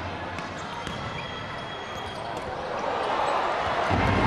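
A futsal ball striking and bouncing on a hard indoor court, a few sharp knocks over steady crowd noise in an arena; the crowd swells louder over the last second.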